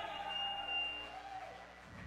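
Live rock band's amplified instruments ringing out and dying away, with a steady high tone held for about a second before it fades.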